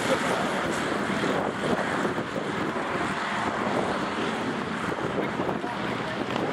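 Go-kart engines running at a distance as karts lap a circuit, mixed with wind noise on the microphone.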